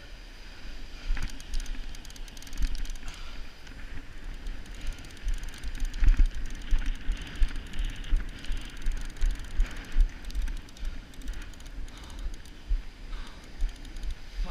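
Penn Senator 12/0 conventional reel working under the load of a hooked shark on 80 lb line, its gears and ratchet clicking. Irregular knocks and thumps of handling run with it, loudest about six seconds in.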